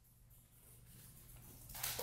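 Very quiet room tone with a faint steady low hum. A faint noise swells in near the end.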